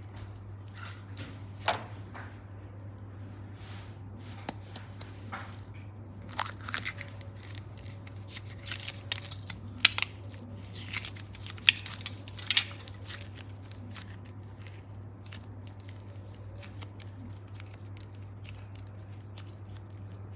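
Soft modeling clay squeezed and pressed by hand into a clear plastic star-shaped mold, giving scattered sharp clicks and crackles that cluster in the middle stretch.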